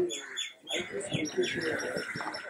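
Small birds chirping in a rapid run of short, high chirps, over faint voices.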